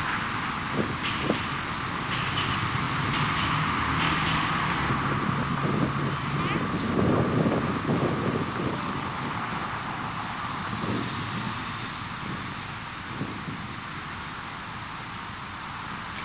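Street ambience with passing car traffic, a continuous noisy rumble that swells in the middle and fades slowly toward the end.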